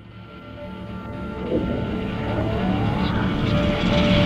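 Cinematic riser sound effect for an animated logo: a swelling rumble with held tones that grows steadily louder, and a rising whine about halfway through.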